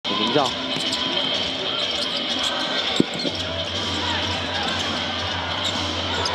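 Basketball game sound in an arena: a ball dribbling on the hardwood court over steady crowd noise, with one sharp thump about three seconds in.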